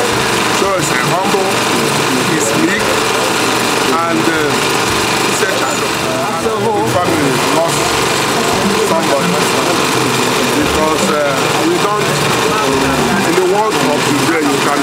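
A man speaking at length into a handheld microphone, over a steady background hum.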